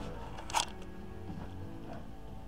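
Faint background music playing through the store's sound system, with one brief rustle or click about half a second in.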